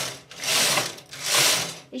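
Knitting-machine carriage pushed quickly back and forth across the needle bed with the partial-knitting levers on, knitting rows of contrast yarn. Each pass is a swelling, fading swish, about one every three-quarters of a second, and the passes stop near the end.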